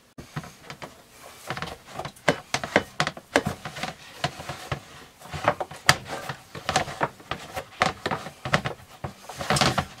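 Hands mixing and kneading wet bread dough in a clear plastic tub, with irregular knocks and clacks of the tub and many small sharp clicks as the dough is worked.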